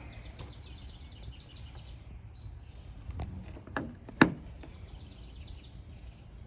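A bird singing a quick run of short high chirps, heard at the start and again near the end, over a low steady outdoor rumble. A little past the middle come three knocks, the last one sharp and the loudest sound here.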